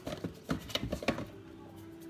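A quick run of light knocks and rustles as a cardboard brownie-mix box is handled and set down on a kitchen countertop, all in about the first second.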